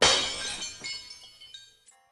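A sudden glass-shattering crash, loud at first, then fading over about two seconds with high ringing tinkles near the end.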